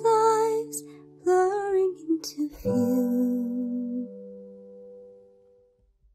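A woman singing the last phrases of a slow song over instrumental accompaniment, ending on a final chord about two and a half seconds in that rings on and fades away.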